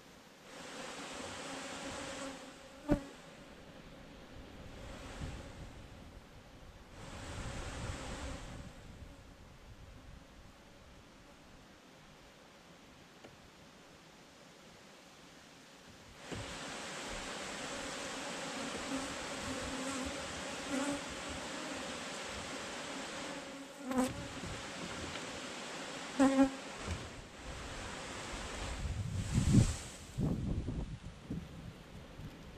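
Honeybees buzzing around an open hive, a pitched hum that swells and fades several times and then holds steadily over the second half. A few sharp knocks from handling the hive cut through it.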